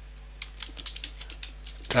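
Typing on a computer keyboard: a quick run of keystroke clicks starting about half a second in.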